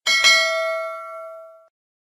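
Notification-bell 'ding' sound effect: a bright bell strike rings with several tones, fades, and cuts off after about a second and a half.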